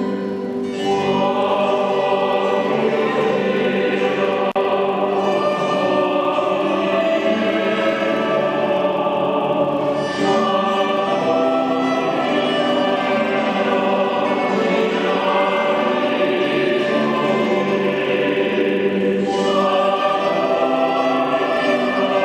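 Mixed-voice choir singing in parts, with a brief lull just under a second in before the voices come back in.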